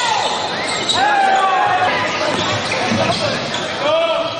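Live basketball game sounds echoing in a large gym: the ball bouncing and sneakers squeaking on the hardwood court in short high squeals, with players' voices mixed in.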